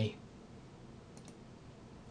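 Quiet room tone with a quick pair of faint clicks a little over a second in, a computer mouse being clicked.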